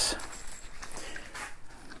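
Faint handling noise: gloved hands rustling and lightly clicking as they unfasten the fitting on a TIG torch cable.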